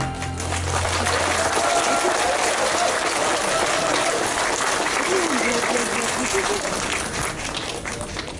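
Audience applause just after a choir's song ends, with a low held note from the accompaniment dying away in the first couple of seconds. A few voices call out in the crowd, and the clapping thins out near the end.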